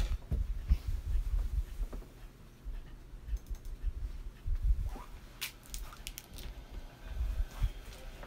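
Handling noises close to the microphone: irregular low bumps with scattered clicks and taps, and a small run of sharp clicks a little past halfway through.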